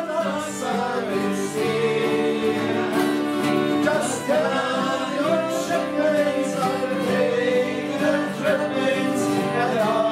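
Several voices singing a folk song together to strummed acoustic guitars, with sustained, held sung notes.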